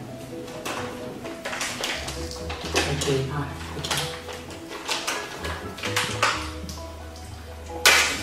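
Background music with held low notes, over the crinkling and rustling of a plastic snack packet being pulled and torn at by hand, since it has no tear opening; a sharp crackle comes just before the end.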